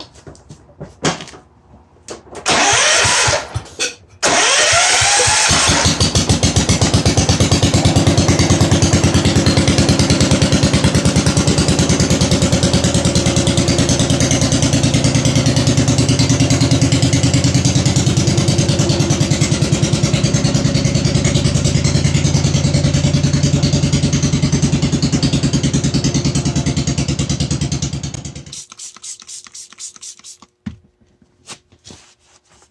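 A John Deere 140 garden tractor's replacement 14 hp Kohler single-cylinder engine is cranked over briefly by its starter about two seconds in. It catches and runs steadily with an even, pulsing beat, then dies away near the end. This is one of the first runs of the freshly swapped-in engine.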